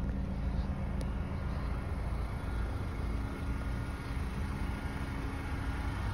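Steady low outdoor rumble of distant road traffic, with one faint click about a second in.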